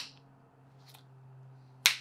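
Fingers snapping: two sharp snaps nearly two seconds apart, with a fainter click between them, over a faint low steady hum.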